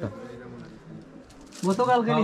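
A quiet stretch of shop room tone with faint low voices, then a man starts speaking about one and a half seconds in.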